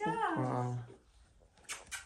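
A man's wordless vocal sound about a second long, sliding down in pitch, then quiet.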